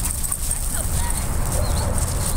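Dogs play-wrestling on gravel over a steady low rumble.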